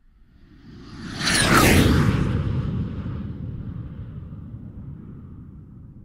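A whoosh sound effect for a logo animation: a rush that builds for about a second, peaks with a high whistle falling in pitch, then trails off into a low rumble that slowly fades.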